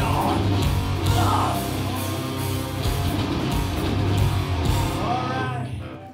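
Live hardcore band playing loud: distorted electric guitars, bass and drums with shouted vocals. The song stops near the end.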